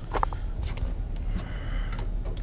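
Handling noises: a few light clicks and rustles as the RC car's thin plastic body is lifted and laid down on a blanket, over a steady low rumble.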